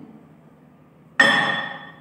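A flat round metal plate bell struck once with an iron rod: a sudden clang about a second in that rings at a clear high pitch and fades away within about a second.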